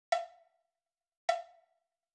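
Two short struck percussion notes, about a second apart, each with a sharp attack, a clear ringing pitch and a quick decay, opening the music of an abstract-animation soundtrack.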